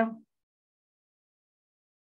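Near silence: a man's spoken word cuts off just after the start, then the audio is dead silent.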